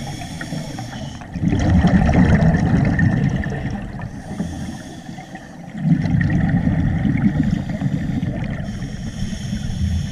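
Scuba diver breathing through a regulator underwater. Two exhalations bubble out with a low rumbling gurgle, one starting about a second in and one about six seconds in, each lasting a couple of seconds. Between them come quieter, hissing inhales.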